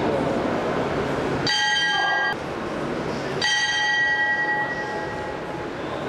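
Boxing ring bell struck twice: the first ring is cut short after under a second, the second rings out and dies away over about two seconds, over the hum of hall noise and voices.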